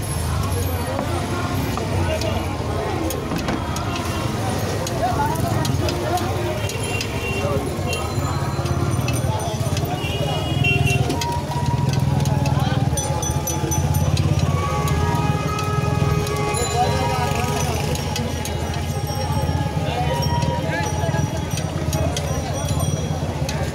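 Busy street noise: many people talking at once over a steady low traffic rumble, with short held tones now and then, like horns or bells.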